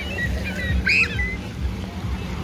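Busy beach ambience: a low rumble of wind and lake water with scattered distant high voices or chirps, and one short, high cry about a second in.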